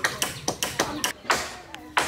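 A hammer driving nails into a wooden house frame: quick, irregular knocks several times a second, a few of them heavier, with voices behind.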